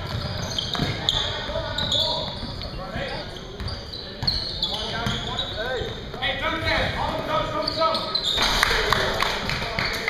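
Basketball bouncing on a gym floor, with a sharp thud now and then, under players' voices in the hall.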